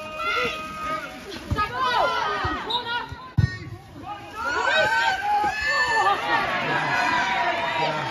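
Women footballers and spectators shouting and calling over one another during a goalmouth scramble, the voices growing busier about halfway through, with two short dull thuds in the first half.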